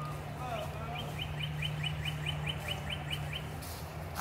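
A bird giving a rapid run of about a dozen short, high chirps, around five a second, over a steady low hum.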